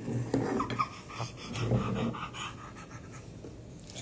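A pet dog breathing close to the microphone, mostly in the first two seconds, with a few light handling knocks.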